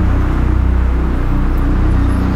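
Low, steady drone of a dramatic background score, held without a break.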